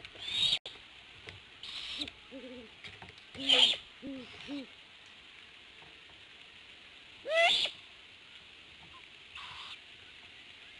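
Great horned owls calling at the nest. Owlets give short, raspy begging screeches every second or two, mixed with a few short, low hoots. A little past halfway comes one louder call that rises in pitch.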